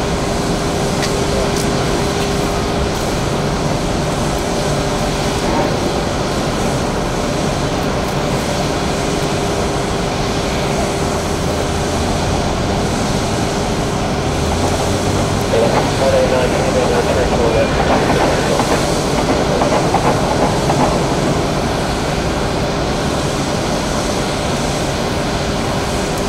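Steady airport background noise, mostly distant jet engine noise from airliners, with a constant mid-pitched hum through the first half. Faint voices come in between about fifteen and twenty seconds in.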